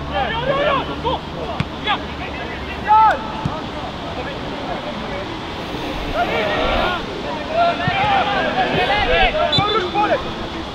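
Short shouts and calls from players across a football pitch: a burst at the start, one louder call about three seconds in, and a run of calls in the last four seconds, over a steady rush of wind noise.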